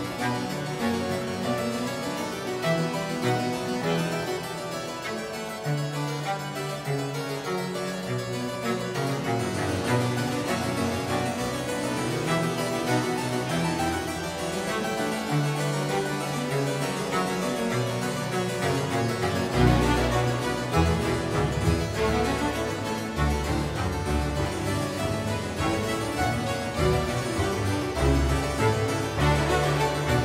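Two harpsichords playing a Baroque concerto, plucked runs of notes over a small string ensemble. Deeper bass notes fill in about twenty seconds in.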